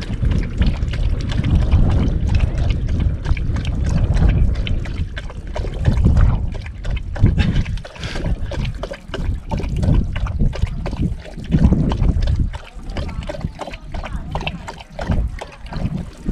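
Golden retriever drinking water poured out for it: irregular lapping and splashing.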